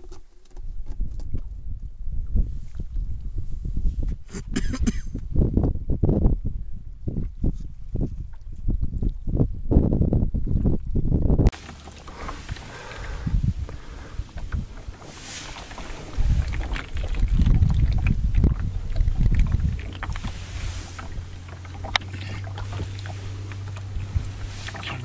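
Wind buffeting the microphone in an open wooden rowboat on a lake, in strong irregular low gusts, with water noise around the boat. About halfway through the sound changes abruptly to a quieter, steadier wind-and-water noise, with a low steady hum joining near the end.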